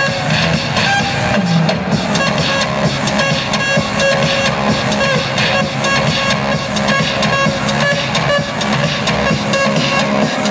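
Loud electronic dance music from a DJ set played over an arena sound system, with a steady beat.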